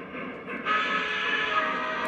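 Model steam locomotive's electronic sound system blowing its whistle: a steady chord of several tones that comes in just under a second in and holds.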